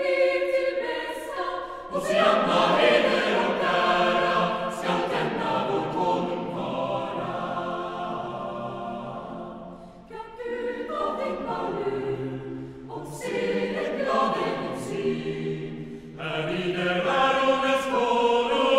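Mixed-voice youth choir singing a sacred Christmas piece in several parts. A full chord comes in about two seconds in and softens toward the middle, a new phrase starts around ten seconds, and the voices swell again near the end.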